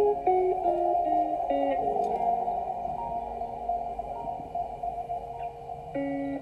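Background music: a melody of short stepping notes, then a long held chord from about two seconds in.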